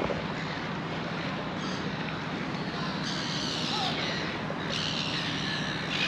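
A steady engine hum under a constant wash of noise, with faint wavering high chirps from about three seconds in.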